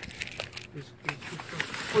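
Plastic bags and packaging rustling and crinkling, with scattered light clicks, as hands dig through a cardboard box of bagged items.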